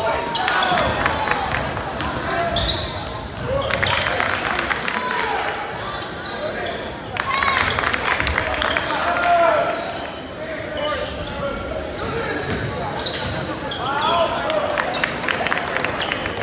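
Basketball game noise in a gym: a ball bouncing on the hardwood court, with short sneaker squeaks and voices calling out across the hall.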